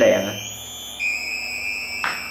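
A compact 12 V DC to 100 V AC car power inverter sounding its electronic power-on beep as it is connected to 12 V. It is a steady high-pitched tone that steps slightly lower and louder about a second in and holds.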